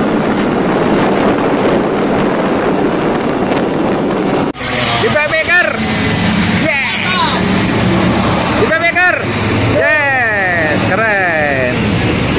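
Motorcycle riding noise with wind buffeting the microphone, an even rush of engine and road sound while travelling in a group of motorbikes. It cuts off suddenly about four and a half seconds in, giving way to a man's voice calling out in bursts over passing motorbike traffic.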